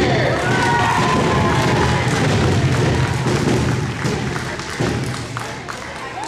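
Audience clapping, many close claps thick and fast, with voices calling out and cheering in the first second or so. It eases off about five seconds in.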